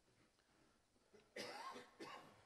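Near silence of a lecture hall, then a single person's cough, sudden and about half a second long, near the end.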